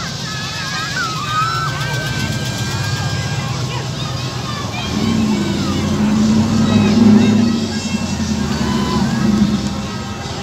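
Engines of classic American cars and pickups rolling slowly past, a deep rumble that swells as one car passes close, loudest around seven seconds in, and drops away near the end, over the chatter of onlookers.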